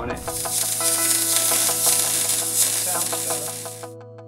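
MIG welding arc crackling steadily as the wire feeds and throws spatter, cutting off abruptly just before the end.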